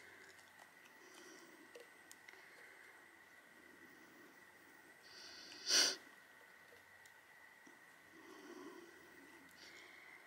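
Quiet room with faint handling noise from a sponge-tip applicator dabbing mica flakes from a small jar into a silicone rose mold. One short, sharp noise comes a little past halfway and is the loudest thing heard.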